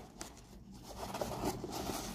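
Faint scraping and rustling of a cardboard egg carton being handled as its lid is pressed shut, a little louder from about a second in.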